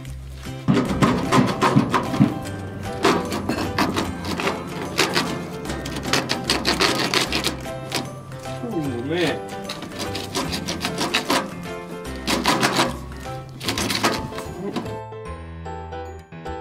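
Background music with a steady beat over a run of scraping and knocking sounds from digging in dry soil around the pipes. The knocking stops about fifteen seconds in, leaving the music alone.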